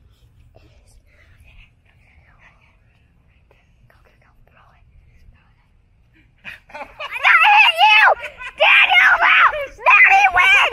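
Faint whispering for most of the time, then about seven seconds in a child's high-pitched screams, loud and wavering, in several long cries.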